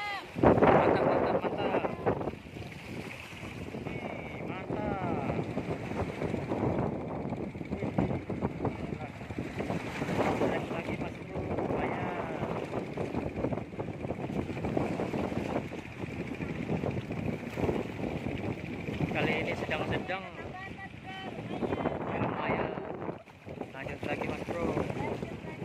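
Wind buffeting the microphone over sea waves washing against a rock breakwater, with a strong gust about half a second in.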